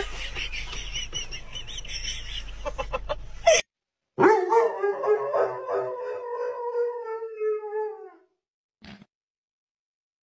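A Doberman howling: one long howl starting about four seconds in, holding a steady pitch that sags slightly before it fades out about four seconds later. Before it, a steady low rumble of a car cabin with faint high wavering tones.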